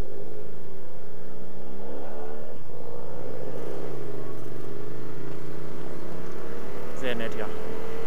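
Yamaha MT-07 parallel-twin engine running on the move. Its revs dip about three to four seconds in, then climb steadily as the bike accelerates, over a steady rush of wind.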